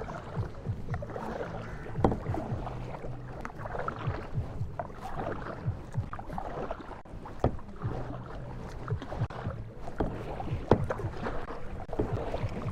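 Double-bladed kayak paddle dipping and splashing in calm river water as a plastic sit-on-top kayak is paddled along, with irregular sharp splashes from the blade strokes.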